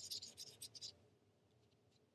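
Kakimori steel dip nib scratching across card stock as ink is swatched on: a quick run of faint, short, scratchy strokes in the first second, then near silence.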